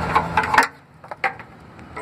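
Oxygen sensor being unscrewed by hand from its threaded bung in the exhaust header: a few light metallic clicks and scrapes of the threads and fingers on the sensor over a low steady background hum. The background drops away suddenly just over half a second in, leaving a couple of faint clicks.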